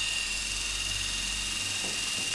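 Braun Face 810 facial epilator running, a steady high-pitched whine.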